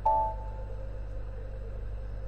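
A short electronic computer chime, a few stacked tones that ring and fade within about half a second right at the start, over a steady low electrical hum.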